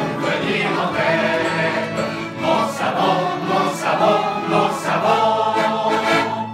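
Several voices singing together in chorus, a sung jingle in phrases.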